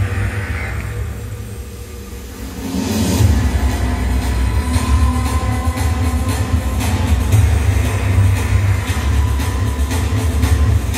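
Music with heavy bass played over an arena's loudspeakers. It drops to a quieter passage about a second in, then the bass and a steady beat come back about three seconds in.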